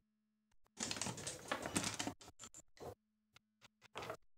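Backgammon dice rattled in a dice cup for about a second, then a few sharp clicks as they tumble out onto the board, and another click near the end.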